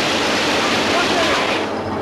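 Loud, dense barrage of automatic gunfire from many guns at once, running together into one steady rush of noise that thins near the end.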